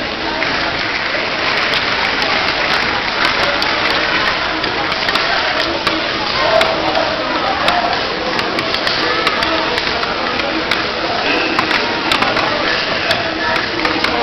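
Steady crowd chatter: many voices talking at once in a large sports hall.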